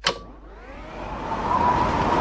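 A sharp hit, then a rushing wind-like sound effect swelling over about a second and a half, with a faint steady high tone through it.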